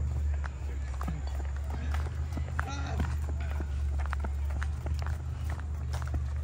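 Footsteps on a paved path at a walking pace, with a steady low rumble of wind on the microphone; a brief voice-like call sounds about halfway through.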